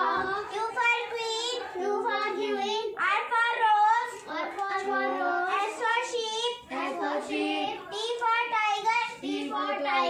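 A young girl chanting the letters and picture words of an alphabet chart in a sing-song voice.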